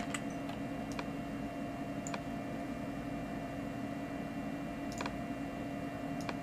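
A few faint, sparse clicks of a computer keyboard or mouse, over a steady background hum.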